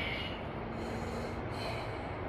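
A man's hard breathing from the effort of dumbbell squats: a sharp breath at the start and another near the end, in time with the reps.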